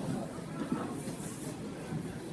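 Inline speed skates' wheels rolling on a wooden rink floor as racing skaters pass close by, a steady rolling noise with indistinct voices in the hall behind it.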